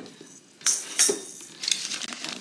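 A stainless steel pot and kitchen utensils clattering as they are set down on a table: three sharp metallic clinks in quick succession.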